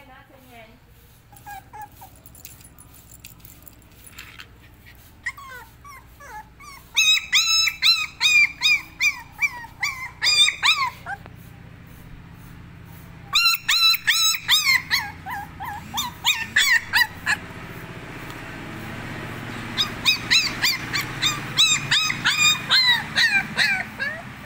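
Puppy whimpering: runs of short, high-pitched whines, about three a second, each call bending in pitch, coming in three spells with short pauses between.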